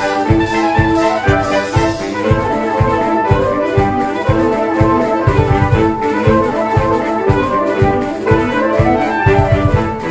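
Saxophone ensemble playing a lively Irish-style tune in several parts, quick moving notes over a steady low beat.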